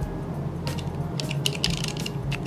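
Handling noise from plastic flashlight holsters with lights inside being shaken in the hands: light rustling and a few quick clicks around the middle.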